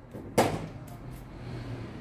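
A small deck of Lenormand cards being shuffled by hand, with one sharp snap of the cards about half a second in, followed by a few light clicks.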